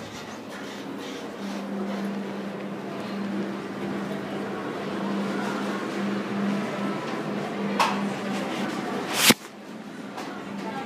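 An elevator car running, with a steady low hum over a background murmur. A sharp knock comes near the end.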